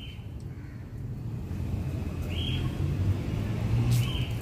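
A low rumble that slowly swells over the few seconds, peaking near the end, with a few short high chirps near the start, about halfway through and at the end.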